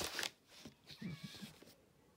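A short meow about a second in, after a brief rustle at the start.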